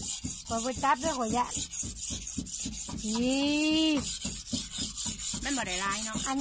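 People's voices in short bursts of talk, with one long drawn-out vocal sound about three seconds in that rises and then falls in pitch, over a steady high hiss that pulses rapidly.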